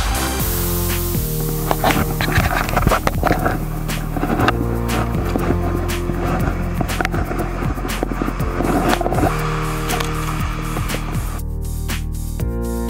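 Electronic background music with steady held bass notes, overlaid by a rough, scraping noise through the middle of the stretch.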